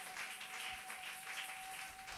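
A congregation clapping their hands in applause, fairly faint and uneven, with a single steady high tone held underneath.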